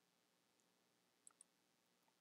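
Near silence, broken by two faint computer-mouse clicks close together a little over a second in, consistent with a right-click opening a menu.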